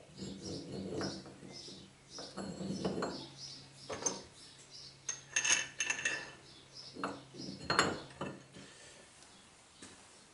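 Steel-on-steel clinks and knocks from a four-jaw lathe chuck being handled and test-fitted on its back plate. The sharpest clanks come about five and a half seconds in and again near eight seconds.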